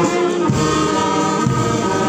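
A marching brass band playing a slow hymn tune in sustained notes, with voices singing along.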